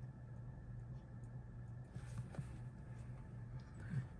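Quiet room hum with a few faint, short taps about halfway through, as a clear acrylic stamp block is positioned and pressed onto cardstock.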